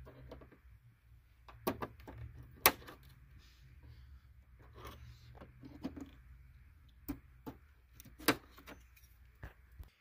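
A handful of sharp clicks and taps from hands working the plastic cowl trim and its small metal clip under a car's hood, the loudest about three seconds in, over a faint steady low hum.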